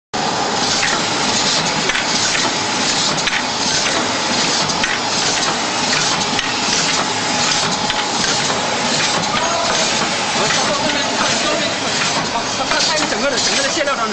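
An automatic glass bottle screen printing machine running, a steady mechanical clatter with frequent light clicks and knocks from its bottle conveyor and pneumatic print station.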